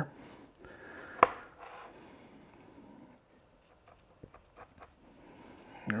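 Knife slicing under the fat cap of a rack of raw beef short ribs: quiet scraping and rubbing, with one sharp click about a second in and a few faint ticks near the end.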